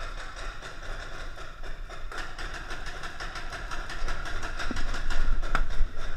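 Paintball markers firing in rapid strings of pops, growing louder over the last two seconds, with a couple of sharper cracks near the end.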